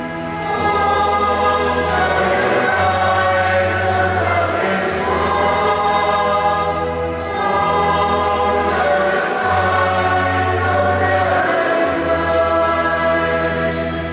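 Church choir singing the refrain of a wedding responsorial psalm in Vietnamese, with sustained instrumental accompaniment.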